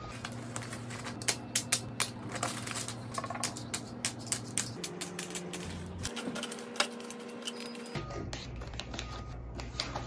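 Plastic pens, pencils and markers clicking and clattering against each other as they are packed into a fabric pouch, many quick irregular clicks, densest in the first few seconds. Soft background music with held notes plays underneath.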